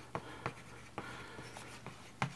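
Chalk writing on a blackboard: a string of short, sharp taps and scratches as the strokes are made, about half a dozen in two seconds.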